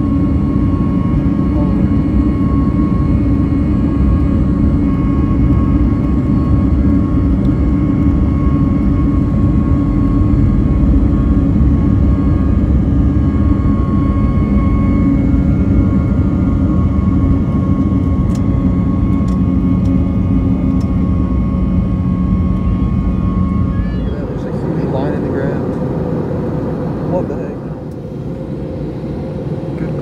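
Jet airliner cabin noise: a loud, steady rush of engine and air noise with a constant hum and a faint whine running through it. About 24 seconds in the sound changes and drops somewhat, with a brief warbling voice-like sound.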